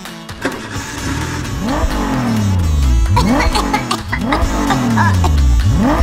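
Engine revving sound effect for a children's ride-on quad bike, the revs rising and dropping back over and over, about once every second and a half.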